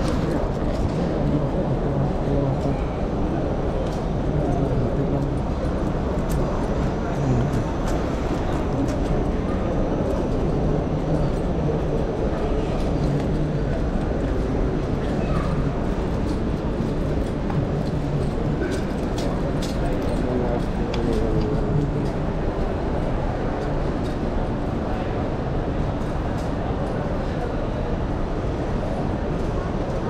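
Steady murmur of a large walking crowd of pilgrims: many indistinct voices overlapping, with no single clear speaker.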